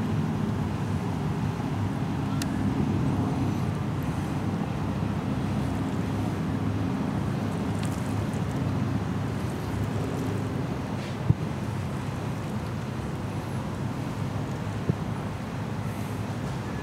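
Steady outdoor ambience: a low rumble and hiss with wind on the microphone and a faint hum underneath, broken by a sharp click about eleven seconds in.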